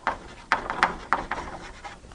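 Chalk writing on a blackboard: a run of short, scratchy strokes as a word is written out.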